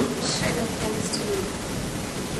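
A distant, off-microphone voice speaking quietly: an audience member asking the speaker a question.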